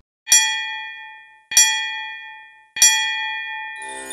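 A bell struck three times, evenly spaced about a second and a quarter apart, each stroke ringing out and fading away.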